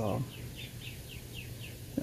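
A small bird chirping: a quick run of short, falling chirps, about four or five a second, that stops shortly before the end.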